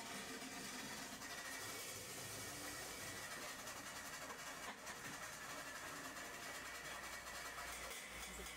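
Faint, steady background hiss of room tone, with no distinct handling sound standing out.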